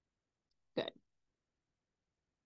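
A single short voiced sound from a woman, well under a quarter of a second, about three quarters of a second in, like a brief catch of breath; otherwise near silence.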